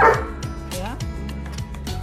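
A dog gives one short, sharp bark right at the start, over background music with a steady beat.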